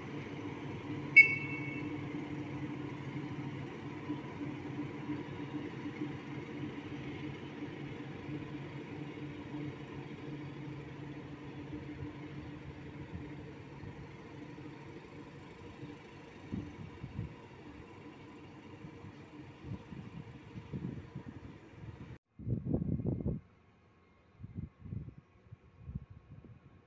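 SM42 diesel shunting locomotive running steadily with wagons, its engine sound slowly fading as it draws away, with a sharp, brief high squeak about a second in. The engine sound stops abruptly near the end, followed by a few short low bursts.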